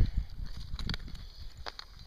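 Dry grass and twigs crunching and rustling as a bundle of dried grass tinder is pushed into a pile of dry sticks, with a few dull knocks, the strongest at the start and about a second in, and scattered light snaps.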